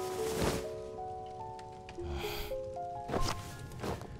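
Soft piano music playing slow, held notes, with several short bursts of cloth rustling from a shirt being taken off.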